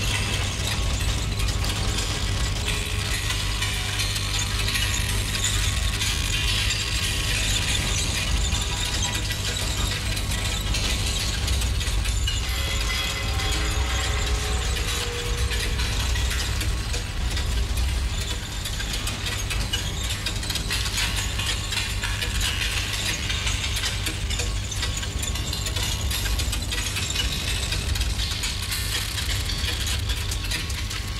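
Experimental industrial soundtrack: a dense, continuous clattering and ratcheting mechanical texture over a steady low hum, with no clear beat.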